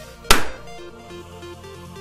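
A latex balloon bursting with a single sharp bang about a third of a second in, over background music.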